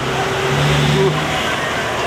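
Diesel engine of a Lanka Ashok Leyland bus running with a steady low hum as the bus drives off.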